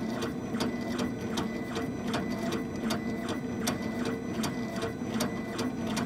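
Laser engraver running a rotary engraving job: its stepper motors whir steadily as the head scans the turning bamboo cylinder, with a regular tick a few times a second.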